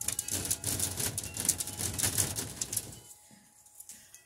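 Rustling and clattering close to the microphone, dense for about three seconds and then dying away, as someone moves about and handles things beside it. Faint wind chimes ring underneath.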